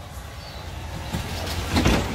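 Open golf-style cart driving along a paved path: a steady low hum with tyre and air noise, swelling to a louder rush near the end as a second cart passes close alongside.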